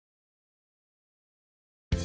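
Dead silence, with no sound at all. Right at the end, a voice over background music starts suddenly.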